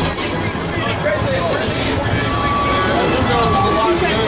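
City street traffic with a heavy vehicle going by, under people talking nearby. A thin, high, steady tone runs through the first half.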